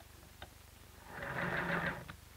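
Sewing machine running, stitching through fabric, starting about a second in after a couple of faint clicks and stopping near the end.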